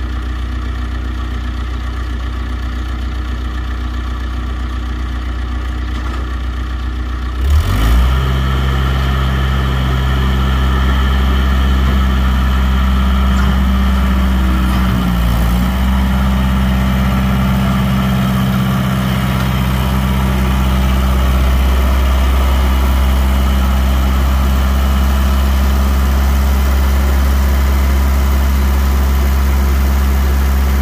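Bobcat 843 skid-steer loader engine idling, then throttled up sharply about a quarter of the way in and running steadily at high revs as the loader drives up onto the trailer, with a brief waver in pitch midway.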